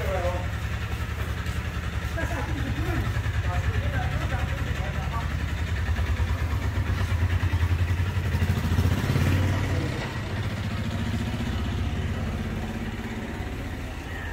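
A steady low drone like a running motor, swelling and easing a little in level, with faint voices over it.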